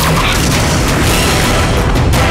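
Loud action-trailer soundtrack: dense music layered with heavy booming hits.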